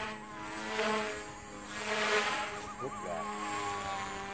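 XK K130 RC helicopter flying overhead: a steady buzzing whine from its rotors, swelling and fading twice as it manoeuvres. A higher wavering whine rides on top, the tail rotor that the pilots say howls as it works.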